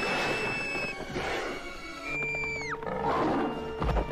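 Animated Tyrannosaurus rex's roar sound effect over a dramatic orchestral film score: two long, high shrieking cries, the second dropping sharply in pitch as it ends, followed by a heavy thud near the end.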